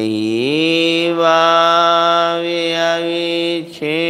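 A man chanting a Jain invocation in a slow, drawn-out melody. He holds one long note that rises in pitch about half a second in, breaks off briefly near the end, and starts a new note.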